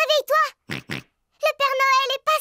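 A cartoon piglet's high child voice calling out excitedly: two short calls at the start, then a longer, wavering call near the end.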